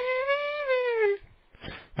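A man singing one long, high-pitched wordless note in imitation of a 1970s TV intro theme. The note rises a little, then slides down and stops a little over a second in.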